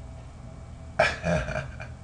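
A man's short throaty vocal noise, starting suddenly about a second in after a moment of quiet.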